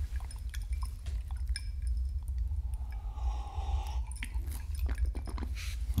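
Close-miked sipping and swallowing from a cut-crystal tumbler, with small wet mouth clicks and light clicks of the glass. A steady low drone runs beneath.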